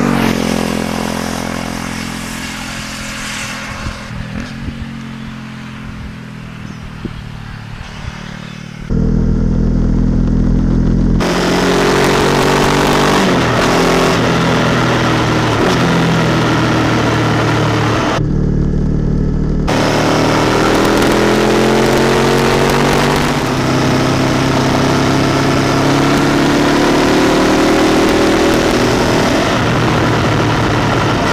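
Motorcycle with a Honda CB500X's parallel-twin engine and an aftermarket Staintune exhaust, its sound fading as it rides away over the first several seconds. About nine seconds in, a sudden change to the engine heard up close on the moving bike under heavy wind rush, the revs climbing as it accelerates.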